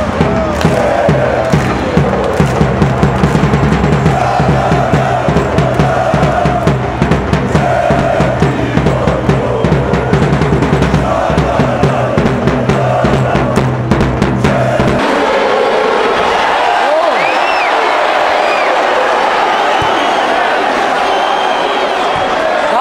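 Football supporters chanting in unison to a steady bass-drum beat. About 15 seconds in, the drum and chant stop abruptly, leaving general stadium crowd noise.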